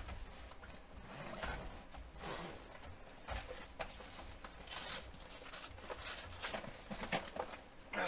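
Irregular clicks, knocks and rustles of someone rummaging through fishing tackle for a hook.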